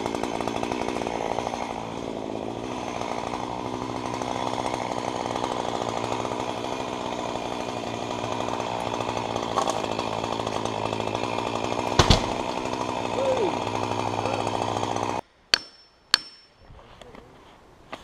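Chainsaw running steadily at full speed as it cuts through the base of a topped hemlock stem to fell it. A single sharp crack comes about twelve seconds in. The saw stops about three seconds before the end, leaving a few faint clicks.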